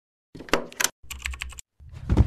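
Logo-intro sound effect: two quick runs of sharp clicks, then a deep, loud low hit that starts near the end.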